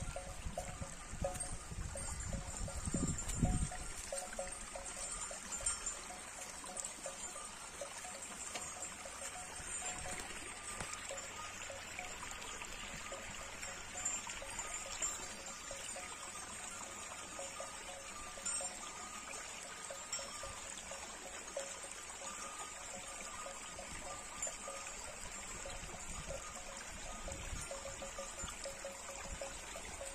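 Rural outdoor ambience: a steady trickle of running water with faint ringing of the grazing cows' bells. Wind rumbles on the microphone for the first few seconds.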